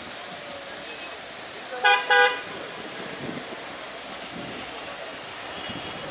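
Vehicle horn giving two short toots in quick succession about two seconds in, loud against the street's traffic background.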